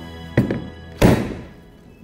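Sticky milk-bread dough being slapped and kneaded by a gloved hand in a wooden bowl: a quick double thud about half a second in and a louder thud about a second in, over background music.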